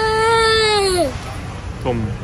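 A young child's long, high-pitched crying wail, held steady and then falling away and stopping about a second in.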